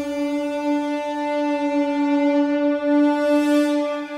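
Film score music: a single long note from a wind instrument, held steadily on its own, swelling slightly near the end.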